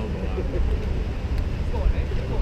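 Outdoor ambience: a steady low rumble with faint, indistinct voices in the background.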